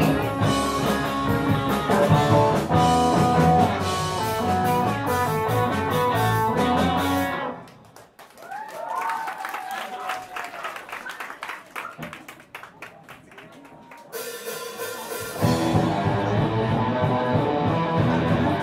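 Live rock band playing electric guitar, bass guitar and drum kit. The full band cuts out about seven seconds in, leaving a much quieter stretch with a few sliding notes, then builds back and returns at full volume a couple of seconds before the end.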